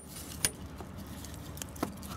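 Faint light metallic clicks and rustling as a steel cylinder-head gasket is worked loose from the engine block, with a couple of small clicks, one about half a second in and one near the end.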